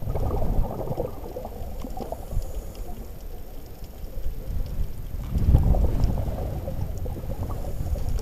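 Scuba regulator exhaust bubbles heard underwater through the camera housing: a bubbly, gurgling burst at the start and another about five seconds in, the rhythm of a diver's breathing, with a low rumble of water noise between.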